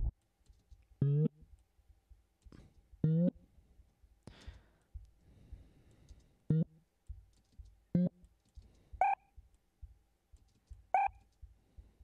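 A short synthesized 'bip' sample played back in a DAW about seven times, one to two seconds apart, each a brief pitched blip. It is transposed between playbacks, so the pitch changes from blip to blip, the last ones much higher than the first.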